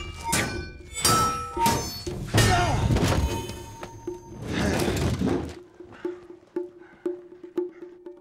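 Swords clashing against swords and shields in a close fight: a run of loud metallic strikes that ring on after each hit, over film score music. About two-thirds of the way in the strikes stop, leaving quieter music with one held low note and soft, regular beats.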